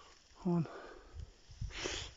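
A man's single short spoken word, then a brief breathy sniff just before the end, over low rumbling handling noise.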